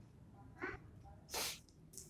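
A pause in a man's talk with two short, faint sounds close to the microphone: a brief voiced sound a little over half a second in, then a quick breathy noise like a sharp intake of breath about halfway through.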